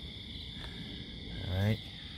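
Crickets chirring outdoors at night: a steady high-pitched trill that runs on without a break.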